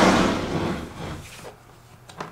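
A Blurex hard plastic carrying case sliding across a tabletop, a scraping noise that fades over the first second, followed by a few lighter bumps.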